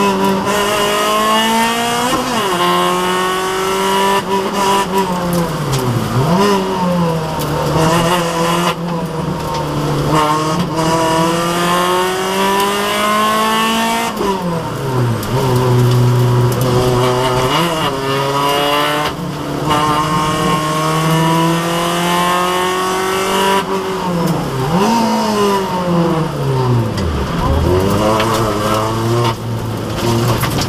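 Peugeot 206 S1600's 1.6-litre four-cylinder rally engine heard from inside the cabin at full stage pace: the revs climb in long rising sweeps under acceleration and drop sharply several times, about 6, 14 and 27 seconds in, as the car slows and downshifts for junctions and corners.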